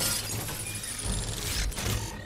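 Film sound effects: a crash of shattering, breaking debris at the start and a second burst about one and a half seconds in, over a low rumble.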